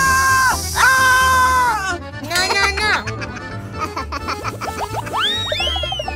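Loud hiss of air rushing out of a burst giant inflatable ball, together with a held, slightly wavering high tone, for about the first two seconds before cutting off suddenly; background children's music with a steady beat runs under it, followed by cartoon-style whistle glides rising and falling near the end.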